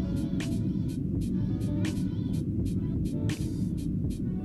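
Subwoofer calibration test tone from a Monoprice Monolith M-215 dual 15-inch subwoofer: a steady low rumble of noise, reading about 87 dB at the listening position while its level is being trimmed toward an 85 dB target. Background music with a steady beat plays over it.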